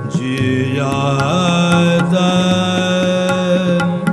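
Male Hindustani classical vocalist singing long held vowel notes in Raga Jog, with an ornamented bend in pitch a little after the first second. Tabla strokes keep time underneath, over a steady drone.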